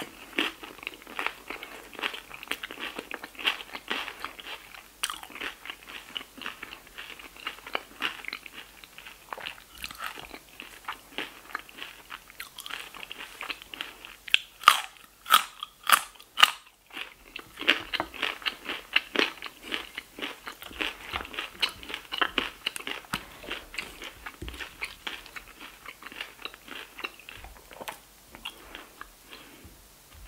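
Close-miked eating: steady crunchy chewing of nachos, tortilla chips with soft toppings. About halfway through come several loud sharp crunches as a raw carrot stick is bitten and chewed.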